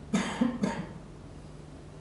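A person coughing: three quick coughs in under a second, near the start.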